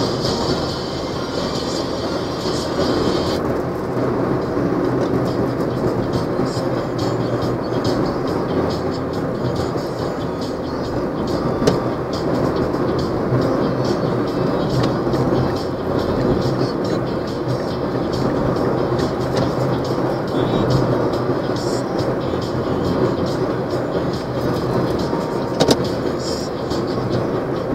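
Steady engine and road noise inside the cabin of a moving bus at highway speed.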